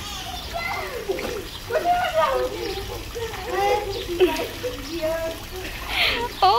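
Water splashing in a swimming pool as a small child paddles and kicks in a float vest, with voices talking throughout, a child's among them.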